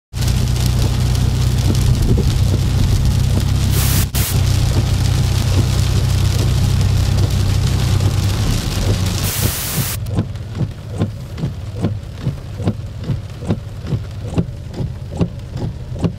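Heavy rain hissing on a moving car over steady road and engine rumble, heard from inside the cabin, with two brief louder surges of hiss. About ten seconds in the hiss cuts off sharply, leaving a quieter, steady ticking at about two a second.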